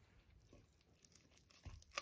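Near silence with faint scraping of a spatula stirring cake batter in a stainless steel bowl, and a short click near the end.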